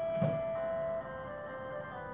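Gentle background music of sustained bell-like mallet tones, with a note change about halfway through. A brief soft thump sounds about a quarter second in.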